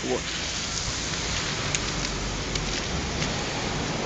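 Wet snow falling on a slushy street: a steady rain-like hiss with a few faint taps.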